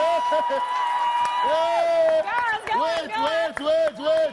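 Voices shouting and whooping without words: one long held call for about two seconds, then a run of short, quick calls.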